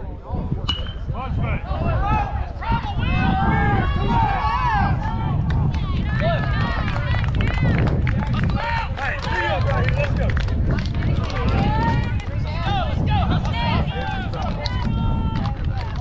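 Many voices shouting and cheering at once from a baseball crowd and team, overlapping with no single clear voice, over a steady low rumble. A sharp click sounds about a second in.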